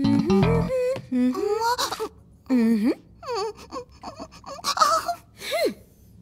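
A short bass-and-guitar music sting that ends under a second in, followed by a cartoon character's wordless whining and moaning sounds that slide up and down in pitch, several separate cries with short gaps between them.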